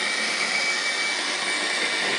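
Okean-214 transistor radio's loudspeaker hissing with static while it is tuned between stations, a steady high whistle in the hiss that weakens about a second in. The radio is on and receiving.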